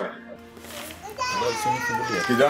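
A person's raised voice in an argument: a loud outburst at the start, then about a second in a high, wavering cry.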